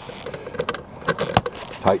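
A few sharp metallic clicks and knocks as a security light fixture and its hardware are handled while it is fastened to the wall, the loudest about one and a half seconds in.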